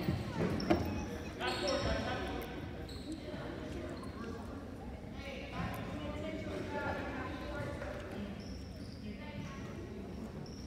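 Basketball bouncing on a hardwood gym court during a game, with a sharp knock about a second in, among the voices of players and spectators in the large gym.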